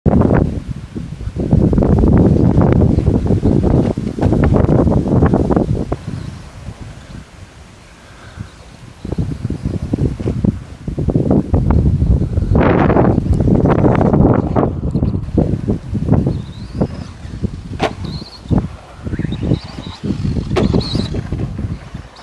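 Wind buffeting the microphone in loud, irregular gusts, easing for a few seconds in the middle. Small birds chirp in the background in the later part.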